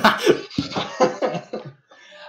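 People laughing in short, breathy bursts that die away within about two seconds.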